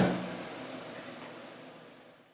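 The fading tail of a splitting-axe blow into a log round: a low ringing tone dies away within about half a second, then the room's echo fades out.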